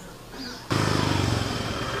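A small engine running steadily, cutting in abruptly less than a second in.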